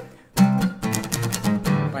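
Acoustic guitar strummed in quick down-up strokes, starting about half a second in after a brief pause.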